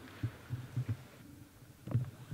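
A few soft, low thuds and shuffles at irregular intervals in a quiet, reverberant church between choir pieces, with a louder thud near the end; no singing.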